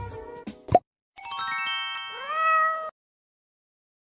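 Intro sound effects: the tail of music broken by glitchy clicks, the loudest a sharp click just under a second in. Then a chiming tone, and a cartoon cat meow whose pitch rises and then holds.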